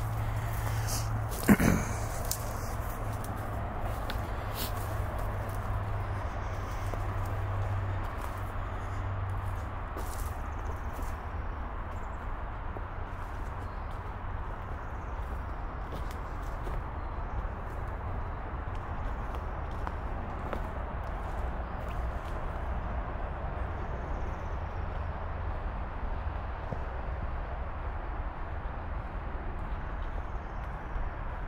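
Footsteps on a leaf-littered dirt trail over a steady low background rumble, with one loud sharp sound about a second and a half in. The step clicks thin out after the first ten seconds or so.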